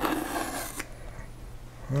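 A small blade scraping and slitting through the paper seal on a cigar box, a short rasp in the first second that then dies down to faint handling.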